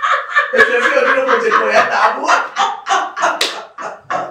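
Two women laughing heartily in short, repeated bursts, with what may be hand claps mixed in.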